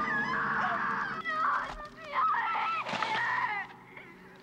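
Shrill wailing and shrieking voices, several overlapping, their pitch bending up and down. They die away near the end.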